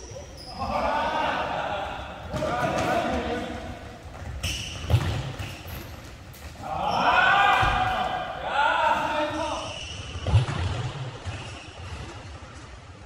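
Players' shouts echoing around a gymnasium during a futsal game, with two sharp thuds of the futsal ball being struck, about five seconds in and again just after ten seconds.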